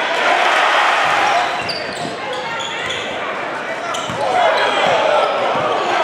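Live gym sound from a high school basketball game: a crowd talking and shouting over the play, with a few thuds of the ball bouncing, the crowd swelling louder a little past halfway.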